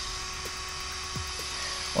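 Small electric cooling fan on a powered-up Hobbywing XR10 Pro speed controller, running with a steady faint whine.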